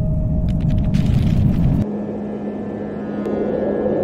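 A loud, deep, wind-like rumble sound effect that starts suddenly and lasts about two seconds, then drops to a quieter drone under a steady low hum.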